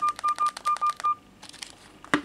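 Key beeps from a Fly Ezzy 5 big-button phone's keypad as digits are typed: a quick run of about six short, single-pitched beeps, each with a button click, ending just over a second in. A few faint clicks follow.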